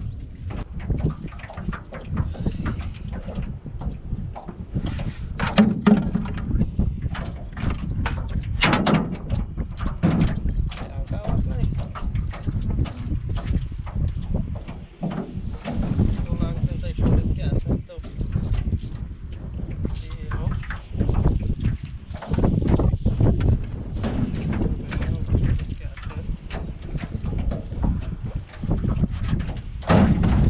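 Wind rumbling on the microphone, with frequent small knocks and rattles from a cast net being gathered and handled in an aluminum jon boat.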